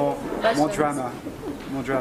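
A man speaking: only speech.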